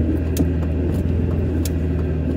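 Steady low rumble of a car's engine and road noise heard inside the cabin while driving, with a couple of light clicks.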